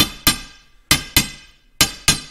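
Steel hammer tapping a new oversized 3/8-inch square steel key into the keyway of a tractor live power shaft: five sharp metallic taps, mostly in pairs about a quarter second apart, each with a brief ring. The key is a tight fit that has to be driven in.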